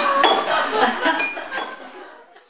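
Light clinks of glasses and dishes over a murmur of voices, fading out near the end.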